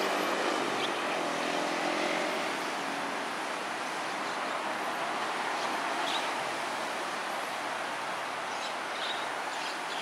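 Steady rush of foaming, churning water, with a few faint short high chirps over it.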